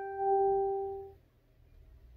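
A single pitched ringing tone, held steady for about a second and then dying away.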